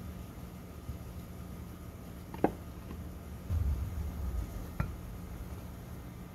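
Concrete cinder blocks being set down and shifted in a dirt trench: a sharp knock about halfway through as block meets block, then about a second of low dull scraping as a block is settled into the soil, and a lighter knock near the end.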